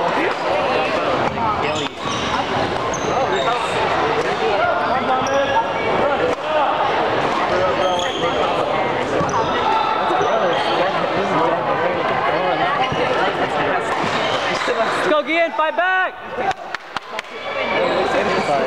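Badminton play on a gym's hardwood courts: rackets hitting shuttlecocks and players' shoes thudding and squeaking on the floor, over steady voices echoing in a large hall. A run of sharp, pitched shoe squeaks comes near the end.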